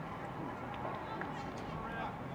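Indistinct voices of spectators and players calling out across an outdoor soccer field, over steady open-air background noise.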